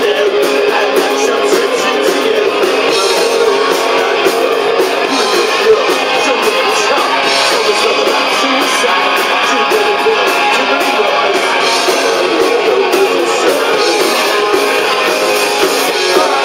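Punk rock band playing live: electric guitars strummed hard over drums and cymbals at a steady loud level. The recording is thin, with almost no bass.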